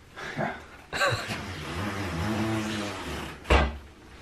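A man shifting himself from a wheelchair toward a toilet, unable to stand on his blistered feet: a long low strained sound of effort, then a single hard knock about three and a half seconds in.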